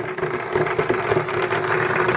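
Battery-powered toy motors and gearboxes whirring steadily on a tabletop, with irregular clicking and rattling: a Baby Alive crawling doll's mechanism and small motorised Num Noms Go Go toys running.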